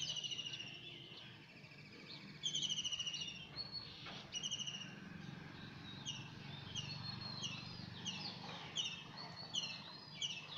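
Bird calls: a few short trilled phrases, then a run of quick downward-sliding chirps repeating about one to two times a second.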